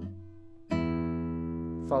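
Nylon-string classical guitar played finger-style in a slow plant-and-pluck arpeggio drill, the notes plucked one at a time from fingers planted on the strings. A ringing note is mostly damped right at the start, leaving a low note sounding, then a fresh pluck about two-thirds of a second in rings out.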